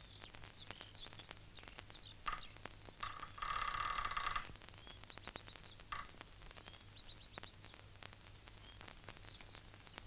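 Faint small-bird chirping, short high chirps scattered throughout, with faint clicks. About three and a half seconds in, a steadier pitched tone holds for about a second and is the loudest sound.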